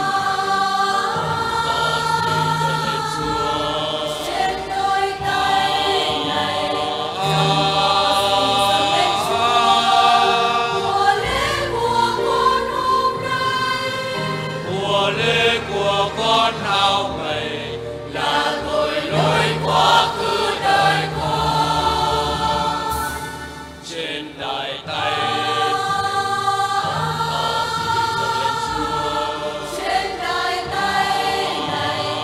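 Mixed church choir of women's and men's voices singing a Vietnamese Catholic offertory hymn, with electronic keyboard accompaniment holding low bass notes.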